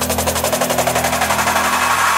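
Drum and bass build-up: a fast, even roll of hits over sustained low notes, getting steadily louder just before the drop.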